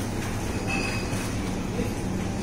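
Steady low rumble and hum of supermarket background noise, with a brief high squeak just under a second in.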